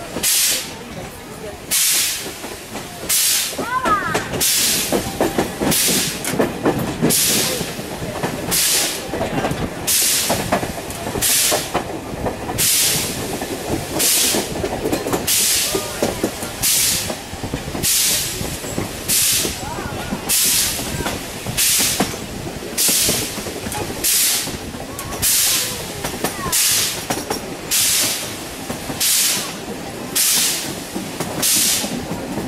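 Narrow-gauge steam locomotive chuffing in a slow, even beat, about one exhaust hiss a second, heard from a coach window over the steady rumble of the coaches on the track.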